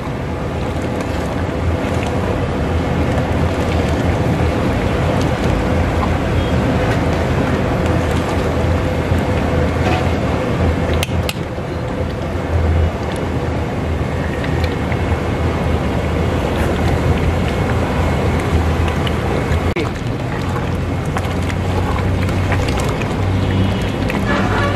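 Steady roar of a gas burner under a large aluminium pot of red kidney bean curry at a full, bubbling boil, with a few short knocks of a steel ladle against the pot.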